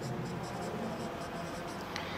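Marker pen writing on a whiteboard: a run of short, light strokes as a word is written.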